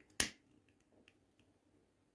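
A single sharp click about a quarter of a second in, then a few faint small clicks.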